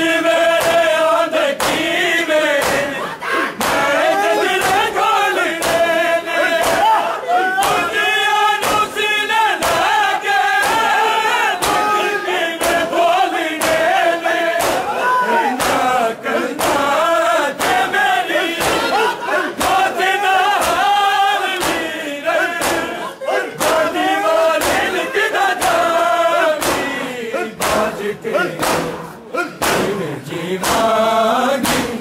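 A crowd of men chanting a noha together, with the steady beat of hands striking bare chests in matam running under the singing.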